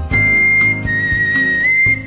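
Sogeum, the small Korean bamboo transverse flute, playing a recorded instrumental melody: a few long held high notes, stepping down and then back up near the end, over a steady low accompaniment.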